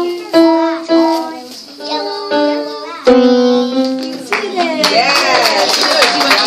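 Single notes played one at a time on an electronic keyboard, each with a sharp start that rings and fades. Clapping and cheering voices break in from about two-thirds of the way through.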